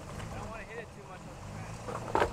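Toyota Tacoma pickup's engine running with a steady low drone as the truck crawls up a muddy washout, with faint voices in the background.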